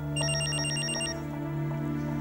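Mobile phone ringing: a quick, high electronic trill of rapid even pulses lasting about a second, over soft background music.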